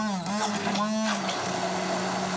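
Electric stick blender running in a glass bowl, pureeing roasted cauliflower into a thick mash; its motor pitch dips and recovers twice as the blades work through the paste.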